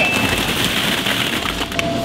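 Many hollow plastic ball-pit balls pouring out of a bag in a dense, clattering rattle.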